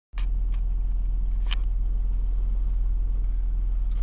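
Steady low rumble of a car idling, heard from inside the cabin. A few short clicks come near the start and about a second and a half in, as the camera is handled.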